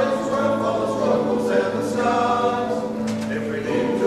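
A mixed choir of men and women singing in harmony, holding long sustained chords that change every second or so.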